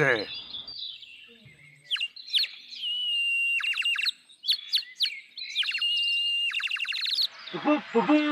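Painted clay bird whistle blown in warbling, bird-like phrases: a high whistle broken by fast trills, two long phrases with short chirps before them.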